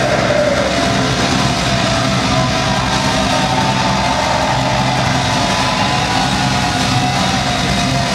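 Concert crowd cheering and shouting in a loud club, over a steady low hum from the stage between songs of a metal set.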